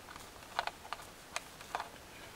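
Faint, light metallic clicks and taps, about six small ticks spread irregularly over two seconds, as a strip of aluminium flat stock is fitted into the pot stand of a lit alcohol stove.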